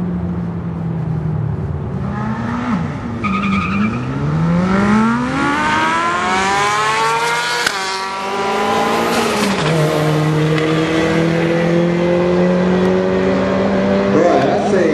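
Drag-racing car engine accelerating hard: its note climbs steeply for a few seconds and breaks with a sharp crack at a gear change. It then settles into a steady, slowly rising note as the car runs on.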